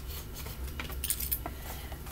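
Light clicks and clinks of a carded toy in a hard plastic blister pack being picked up and handled, over a low steady hum.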